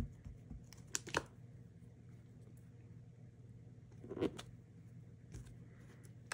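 A few light taps and clicks of a clear acrylic stamp block and a small ink pad being handled while inking a rubber truck stamp and pressing it onto cardstock: one at the start, two close together about a second in, and a louder one about four seconds in, over a faint low hum.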